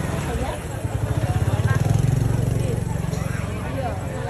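A vehicle engine running close by with a steady low pulsing that swells loudest around the middle, under people's voices.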